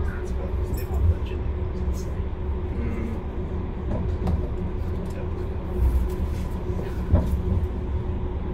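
Bombardier M5000 light-rail tram running along the track, heard from the driver's cab: a steady low rumble with a faint steady motor hum and a few light knocks.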